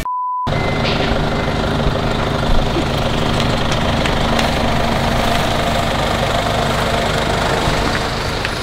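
A short, pure, steady test-tone beep under a colour-bars transition, cut off after about half a second. Then the steady running noise of a nearby vehicle engine idling, with a low steady hum.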